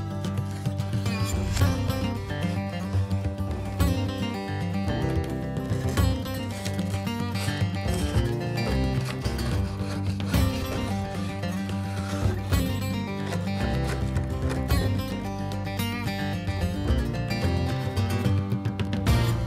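Background music playing throughout.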